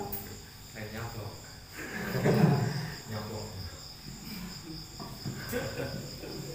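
Crickets chirping as a steady high-pitched trill in the background, with a man's voice speaking briefly and quietly about two seconds in.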